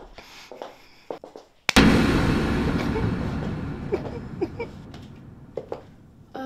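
A sudden loud burst of noise about two seconds in that dies away slowly over the next four seconds, after a few soft knocks.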